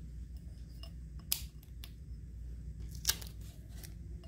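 Handling of a small piece of tape and the thin plastic stencil film on a wine glass: two short crackles, one a little after a second in and one about three seconds in, over a low steady room hum.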